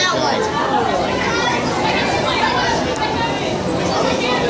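Several people talking at once, overlapping chatter and voices filling a crowded indoor hall at a steady level.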